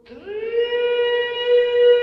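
A bowed string instrument of a string quartet slides quickly up into a loud, long held note with no vibrato.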